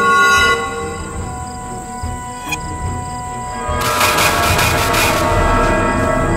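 Eerie horror-film score of held tones, with a single sharp hit about two and a half seconds in and a louder, shrill, rattling swell building from about four seconds in.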